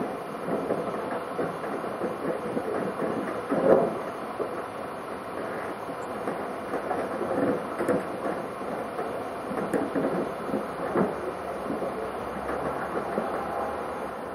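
Wooden chairs knocking, creaking and scraping against each other as a person clambers through a heap of them bound together with string. A steady clatter, with a louder knock about four seconds in and another near eleven seconds.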